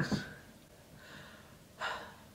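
A woman breathing out and in sharply, with a quick gasp near the end, catching her breath from the sting of hard wax just pulled from her armpit.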